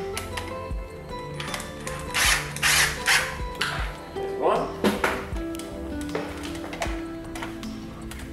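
Background music with a cordless drill driving screws to fasten a fly screen cassette to a window frame, in several short runs between about two and five seconds in.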